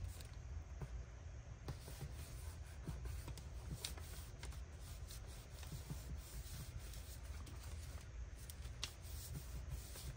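Hands rubbing and pressing paper flat on a cutting mat: a faint papery rustle with scattered small ticks, over a low steady hum.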